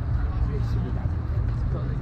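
Outdoor ambience of a busy riverside park: a steady low rumble with faint, indistinct voices of people nearby.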